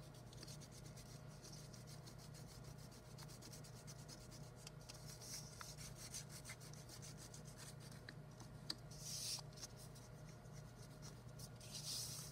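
Side of a peeled wax crayon rubbed back and forth over folded paper, a faint scratchy rubbing that brings out the raised paper shapes glued inside. It swells briefly about nine seconds in and again near the end.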